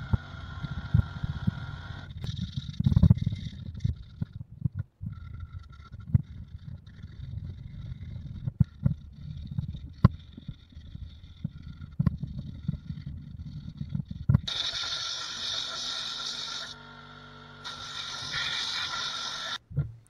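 Sandpaper rubbed by hand over an epoxy-coated oak mug in irregular scrubbing strokes, working from coarse 60 grit to fine 220 grit. In the last five seconds a steadier, brighter hiss takes over.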